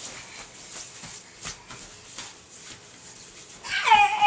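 Soft rustles and taps of a fabric pop-up tent as a baby crawls about inside it, then near the end a loud, high-pitched squeal from the baby, wavering in pitch.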